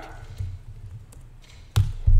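Computer keyboard typing: a few faint key taps, then one sharp, louder knock near the end as the code is run, over a low steady hum.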